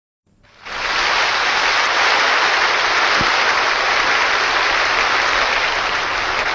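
Large audience applauding steadily, the clapping fading in during the first second.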